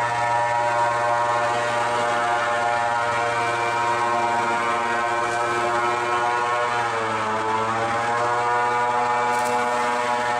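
Airboat engine and air propeller running at speed with a steady, loud drone. The pitch drops briefly about seven seconds in and climbs back up as the revs ease and return.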